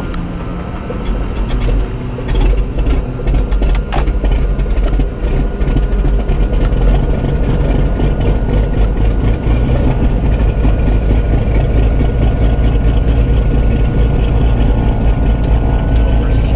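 Cirrus SR22's six-cylinder Continental piston engine being started after priming: it catches about a second in, runs a little unevenly for a few seconds, then settles into a steady idle.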